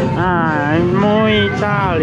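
A high voice singing a few long, gliding, wavering notes over background music.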